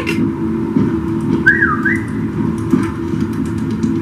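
TV episode's soundtrack playing: a steady low drone, a short warbling tone about a second and a half in, and faint ticks.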